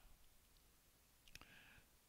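Near silence: room tone, with one faint click about a second and a half in.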